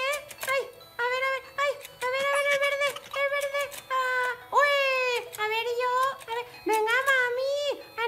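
A high-pitched voice making a run of drawn-out, wordless sounds that rise and fall in pitch, with light clicks from the turning board of a toy fishing game between them.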